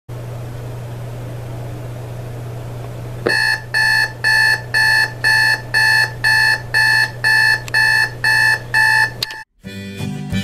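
Digital alarm clock going off: a string of even electronic beeps, about two a second, starting a few seconds in over a low steady hum. The beeping cuts off suddenly near the end, as the alarm is switched off.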